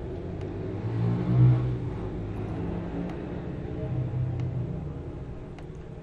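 A low engine hum, louder and rising about a second and a half in, swelling again around four seconds, then easing off.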